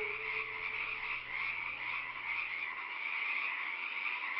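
A steady, softly pulsing animal chorus. The last held note of the music fades out about a second in.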